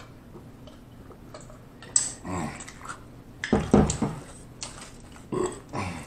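A man burping after gulping a drink: three burps, about two, three and a half and five and a half seconds in, the middle one the loudest and deepest.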